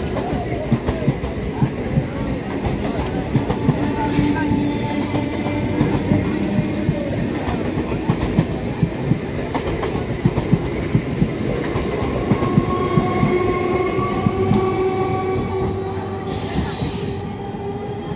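MEMU passenger coaches rolling past, their wheels clattering over the rail joints in a dense irregular clicking. Steady squealing tones from the wheels, stronger in the second half, and a brief hiss near the end.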